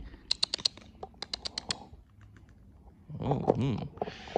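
Two quick runs of light, sharp clicks, several a second, in the first two seconds, then fainter clicks, with a man's short "hmm" near the end.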